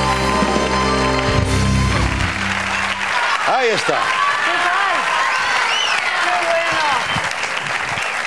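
Studio band music over audience applause; the music stops about three seconds in, leaving applause with cheering and shouts from the audience.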